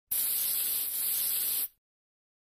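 A burst of steady, bright hiss lasting about a second and a half that cuts off suddenly into dead silence: an edited-in intro sound effect.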